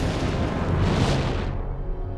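Cartoon sound effect of a Red Lantern power ring being recharged at a glowing red power battery: a loud surge of energy over a deep rumble, swelling to about a second in and then dying away.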